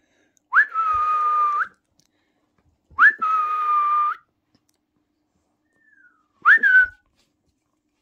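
A person whistling three times. The first two are long notes, each sliding up quickly and then held steady for about a second; the third, near the end, is a short note that rises and falls.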